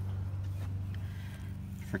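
A steady low machine hum with no change in pitch or level; one spoken word comes in at the very end.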